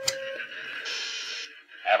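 Radio-receiver sound effect: a click and a short steady tone, then a hiss of static that grows brighter about a second in. A thin, radio-filtered man's voice starts right at the end.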